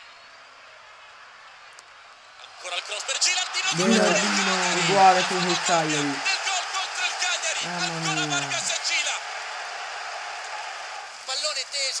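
Football stadium crowd cheering on a TV match broadcast, swelling about three seconds in, with long drawn-out shouted voices over it, then easing off.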